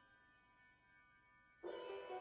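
Wind ensemble music: a few faint, fading held tones, then about a second and a half in a sudden loud entry of bright struck metal mallet percussion that keeps ringing.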